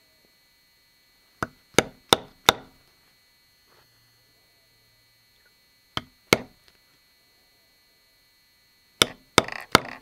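A rawhide mallet striking a metal basketweave stamp into leather laid on a stone slab, setting each impression of the pattern. There are nine sharp taps in three bursts: four quick ones about a second and a half in, two around six seconds, and three near the end.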